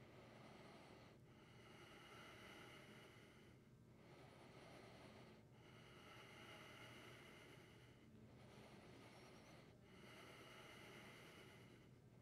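Faint, slow Ujjayi breathing through the nose: long inhales and exhales of about two seconds each, one after another with short pauses between.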